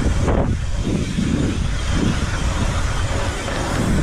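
Wind buffeting the microphone as a bike moves at speed, over the steady hiss of tyres rolling on the asphalt pump track.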